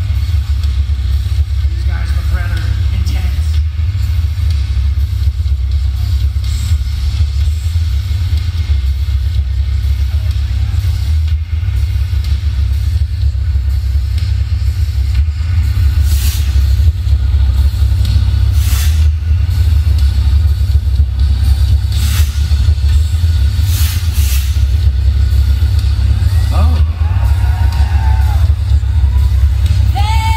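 Loud, steady deep rumble from a stage sound system, with a few sharp hits in the second half.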